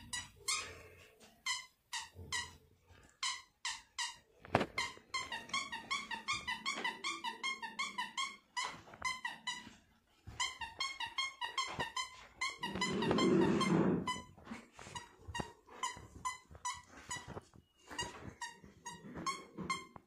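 Squeaker in a plush dog toy squeezed over and over, giving quick runs of short high-pitched squeaks with brief gaps between runs. A louder, lower sound lasting about a second breaks in near the middle.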